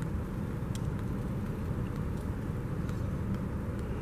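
Steady low outdoor background rumble with a few faint ticks.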